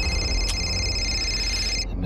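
A phone ringing: a steady electronic ring of several high tones held together, which cuts off near the end as the call is answered. A low drone runs underneath.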